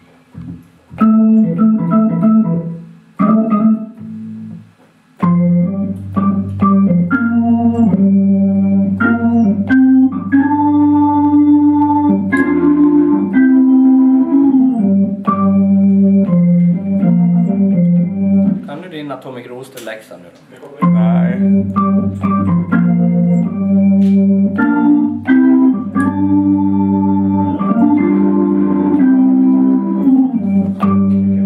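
Hammond organ being played: a few short chord stabs at first, then long held chords from about five seconds in, with a brief break about two-thirds of the way through.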